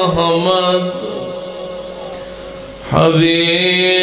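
A man's voice chanting religious recitation in long, held notes through a microphone and sound system. The chant fades to a quieter stretch about a second in, then comes back strongly on a sustained note about three seconds in.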